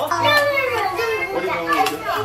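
Young children's voices, wordless vocalizing and playful calls with sliding pitch, throughout.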